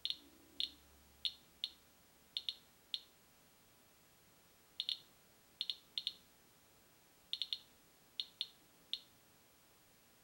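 Radiation Alert Inspector EXP Geiger counter chirping at irregular, random intervals, about twenty short high chirps in ten seconds, some bunched in quick pairs and triplets. Each chirp is one detected count of ionising radiation, and the meter reads about 100 counts per minute.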